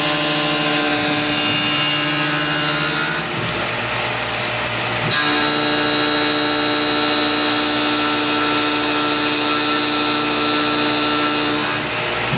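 CNC mill's 3/8-inch two-flute carbide end mill cutting 6061 aluminium at full tool width under coolant, a steady multi-tone machining whine. About three seconds in, the tone gives way to a rougher, noisier cut for about two seconds, then the steady tone returns. The cut runs at full width because there is no room for a trochoidal path, and its sound dissatisfied the machinist enough that he slowed the feed to 70%.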